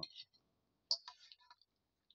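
Short wet mouth clicks close to the microphone between phrases: a sharp lip smack about a second in, then a few faint tongue ticks.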